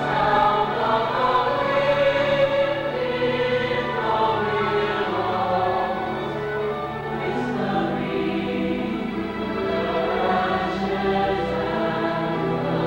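A choir singing a slow passage in long held chords.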